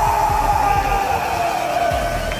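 A loud scream held on one high pitch, sinking slightly toward the end.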